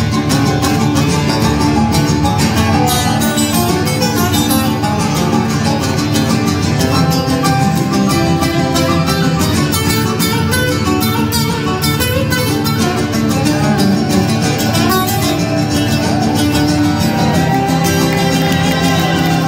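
Amplified acoustic guitars playing an instrumental passage of a song together, with no singing.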